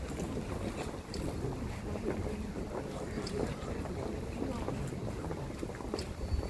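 Wind rumbling on a phone's microphone over the shuffle and low murmur of a crowd walking along a street.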